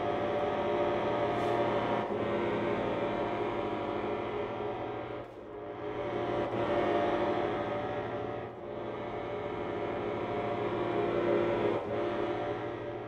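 Chamber trio of bayan (Russian chromatic button accordion), violin and cello playing long, steady held chords, with brief dips in level about five and eight and a half seconds in.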